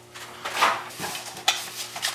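A person climbing a stepladder: footsteps and rustling onto the rungs, with a sharp knock about one and a half seconds in.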